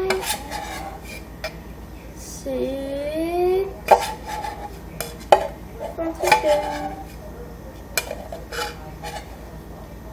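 A metal spoon scooping Nesquik chocolate powder and knocking against its container, with several sharp clinks about four, five and eight seconds in. A child's wordless vocal sounds come in between.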